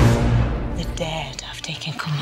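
Film-trailer music: a deep hit right at the start that rings on as a low tone, then a woman's hushed, whispery voice speaking a line over it.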